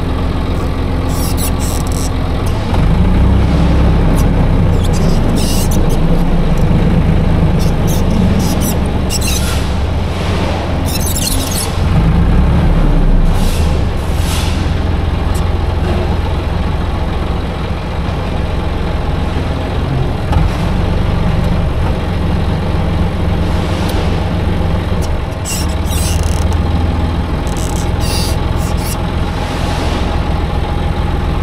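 Forklift engine running as it drives with a load on its forks, its drone rising and easing with the throttle, with brief high-pitched squeaks at intervals.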